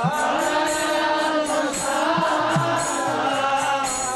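Devotional mantra chanting: a held, slowly gliding sung line over a steady beat of short percussive strokes.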